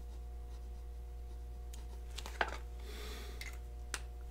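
Extra-fine-nib fountain pen scratching faintly across notebook paper as a word is written, over a steady low hum. Two light ticks come in the second half, about a second and a half apart.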